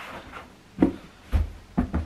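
Dull thuds and knocks as a stiffening board is pressed into the bottom of a foldable fabric storage ottoman, a few hits in the second half.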